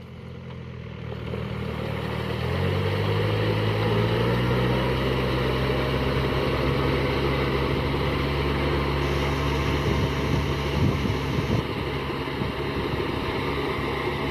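Yanmar 494 tractor's diesel engine running under load while puddling a flooded rice paddy on cage wheels, with the churn of mud and water. The engine picks up in pitch and loudness about two and a half seconds in, then runs steady.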